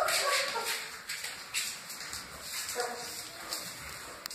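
Great Dane puppy whimpering in short, high cries, once at the start and again near three seconds in, over scuffling and rustling on the floor.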